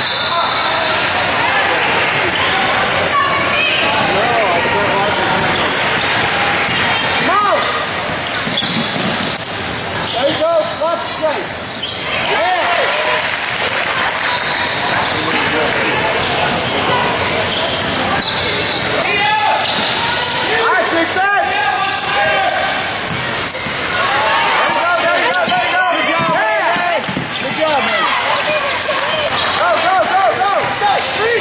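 Basketball game sound on an indoor hardwood court: a ball bouncing, with players' and spectators' voices calling out, in a large echoing gym.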